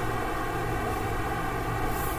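A steady low hum with background hiss and no speech: continuous room noise, with no distinct events.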